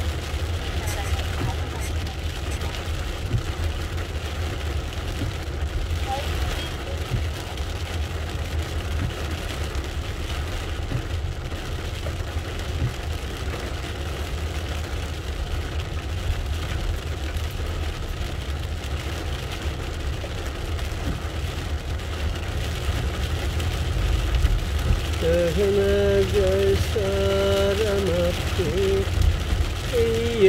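Heavy rain on a car's windscreen and roof, heard from inside the cabin over the steady low rumble of the car driving on wet road. About five seconds before the end, a pitched voice or tune comes in over it.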